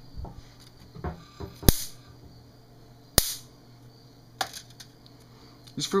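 Sharp electric snaps of a 1500-volt bug zapper racket arcing as its grid hits fruit flies. There are two loud cracks about a second and a half apart and a few fainter clicks around them. The arcs are stronger than stock because the resistor between the racket's grid wires and circuit board has been cut out.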